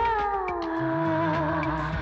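Film song: a long held sung note sliding slowly down in pitch, over the song's low bass accompaniment.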